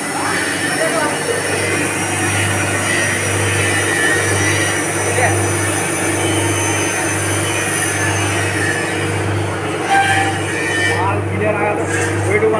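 Steel rotating-drum snack roaster turning with fryums pellets tumbling inside: a steady machine noise with a low throb that pulses about once a second.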